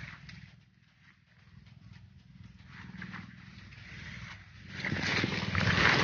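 Faint rustling and handling noise over a low steady hum, growing into louder rustling through grass and leaves in the last second or so.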